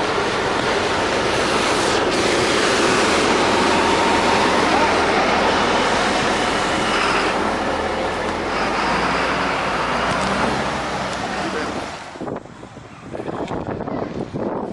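Loud, steady road traffic noise from passing cars, which drops away sharply about twelve seconds in.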